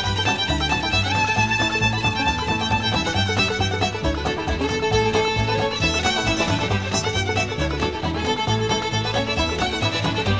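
Instrumental break of a folk-rock song: a fiddle plays the lead over a steady beat from the rhythm section.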